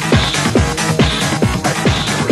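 Electronic dance music from a DJ mix in the late-1980s Valencian Ruta Destroyer club style: a steady, fast kick-drum beat, each kick dropping in pitch, with a brighter high sound coming back about once a second.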